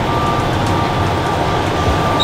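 Interior of an automated airport train car: a steady low rumble and hum, with a thin steady high tone held throughout.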